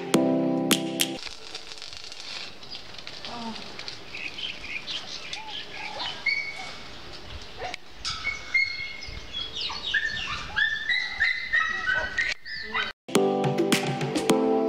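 Several birds chirping and calling, a busy overlapping run of short whistled notes that grows denser in the second half. Strummed guitar music plays for about the first second and comes back near the end.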